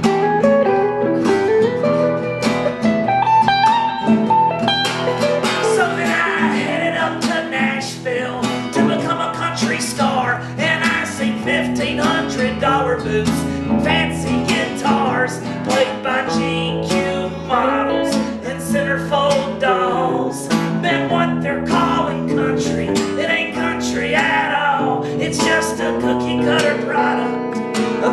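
Instrumental break in a live song: an acoustic guitar strummed steadily under a Telecaster-style electric guitar playing lead lines, with some bent notes.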